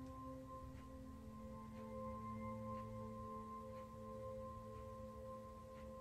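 Soft ambient meditation music: long, steady ringing tones like a singing bowl over a low drone, with faint light ticks about once a second.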